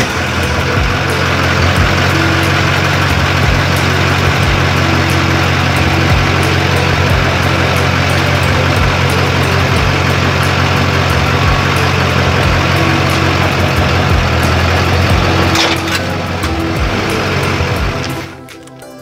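Duramax LB7 6.6-litre V8 turbodiesel running steadily just after being started, under background music with a steady beat.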